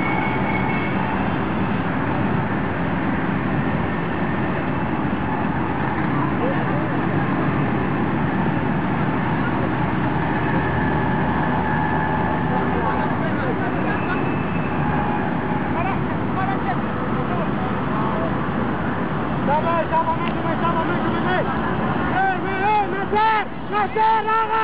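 Distant shouts and talk from players on a football pitch, over a steady outdoor background noise. Near the end a closer voice calls out several times.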